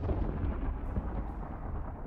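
Deep, steady rumble from film sound effects, accompanying an erupting volcano under a stormy sky.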